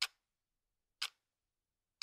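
Sharp ticks at an even one-second pace, two in this stretch, with silence between.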